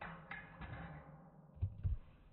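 Plastic-bottomed Ambition Jib snowskate sliding along a metal rail, a faint scraping hiss, then two dull low thumps close together near the end as board and rider come down on the snow.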